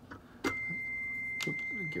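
A click of a patch cable at the synthesizer's patchbay, then a steady, pure high tone from the Behringer Neutron synthesizer that holds until it cuts off near the end, with a second click partway through.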